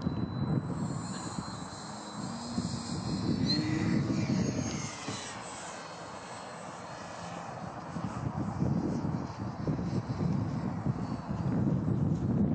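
A model airplane's motor whining in flight: a steady high whine, with its pitch shifting about four to five seconds in as the plane passes.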